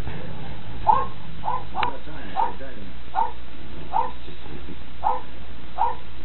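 A dog barking in a string of short, high yaps, about eight of them, a little more than one a second.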